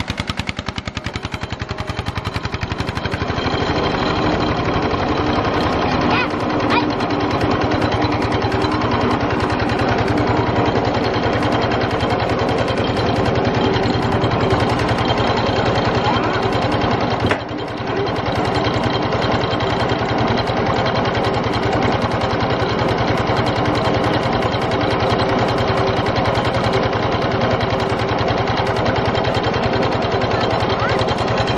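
Single-cylinder diesel engine of a two-wheel walking tractor running steadily with a rapid, even pulse, getting louder about three seconds in and briefly dropping about two-thirds of the way through.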